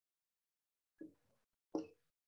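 Two short marker strokes on a whiteboard, about one second in and near the end, the second louder, in an otherwise quiet room.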